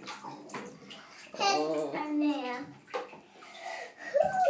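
A toddler's voice, wordless and about a second long, in the middle, over faint water sloshing and small knocks in a bathtub.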